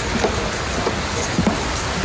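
Steady rush of splashing fountain water, with a few faint clicks.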